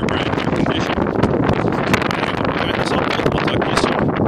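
Wind buffeting the phone's microphone: a loud, steady, low noise broken by many small crackles.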